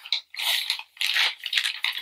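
Crinkling of a plastic project bag being handled, in several short crackly bursts.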